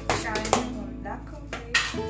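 Plastic tub lid being pried open by hand: a few sharp clicks and snaps, the loudest about half a second in and another near the end, over background music.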